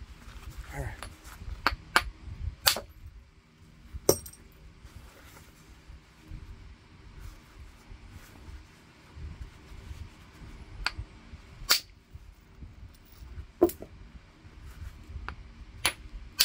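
A copper bopper striking heat-treated Mississippi gravel chert in hard-hammer percussion flaking. Sharp clicking strikes come a few in the first four seconds, then stop for several seconds, then come again about three times near the end.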